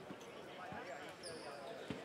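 Faint basketballs bouncing on a hardwood arena court during warm-ups, a few soft thuds over low arena room noise, with a brief high squeak a little past the middle.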